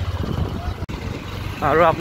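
A vehicle's engine running underway, a low steady throb. A man starts speaking near the end.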